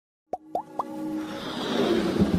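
Logo intro sting: three quick pops, each sliding upward in pitch, in the first second, then a swelling whoosh that builds over steady synth tones.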